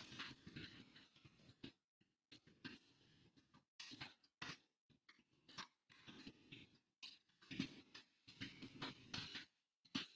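Faint typing on a computer keyboard, coming in irregular spurts with short silent gaps between them.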